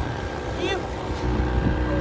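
Small passenger boat's engine running steadily with a low drone while under way.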